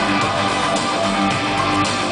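Live rock band playing: electric guitars and drums over a steady beat, recorded from the audience.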